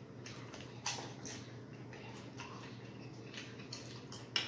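Faint chewing of a mouthful of buttered popcorn, with a few soft crunches and wet mouth clicks, the loudest about a second in.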